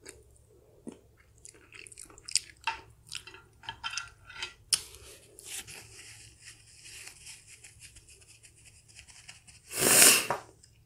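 A person chewing a spicy pan-fried chicken dumpling close to the microphone, with many small wet, crunchy clicks in the first half. Then a long soft rustle while a tissue is held to the face, and a short loud rush of noise just before the end.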